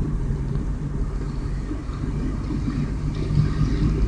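Car engine and road noise heard from inside the cabin: a steady low hum and rumble as the car rolls slowly in third gear after a downshift from fourth.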